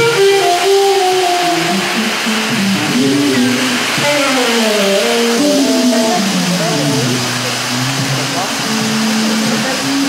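Live improvised band music with saxophone and electric bass guitar, its melodic lines sliding and wavering in pitch, with a long downward slide in the middle.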